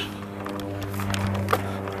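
A steady low mechanical hum made of several even tones, unchanging in pitch, with a single faint click about one and a half seconds in.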